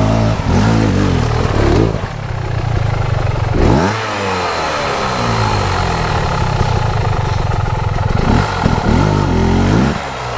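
Trail motorcycle engine ridden slowly over muddy ground, the revs blipped up and down again and again, with a sharp rise about four seconds in and more quick blips near the end.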